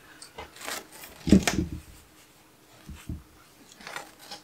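Cloth rustling and swishing as punch needle foundation fabric is spread over a gripper strip frame, with a louder swish and soft bump about a second and a half in, then a few light taps.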